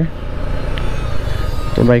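Suzuki Gixxer FI single-cylinder motorcycle on the move: a steady mix of engine and wind noise.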